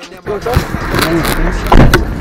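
Muffled voices over a steady low vehicle rumble that comes in about a second and a half in, with a loud knock near the end.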